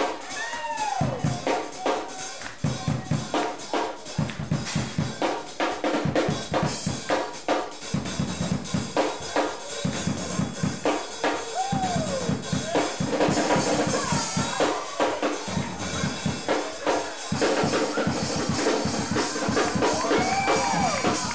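Live band playing a groove, the drum kit to the fore over bass guitar, with a pitched lead line that slides up and down.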